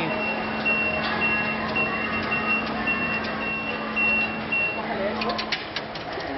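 An electronic beeper sounding one high tone, pulsing on and off about twice a second for nearly five seconds, over a steady low hum. A few sharp clicks follow near the end.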